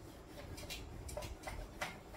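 Whiteboard eraser wiping a whiteboard in short, quick strokes, about five faint scrubs in a second and a half.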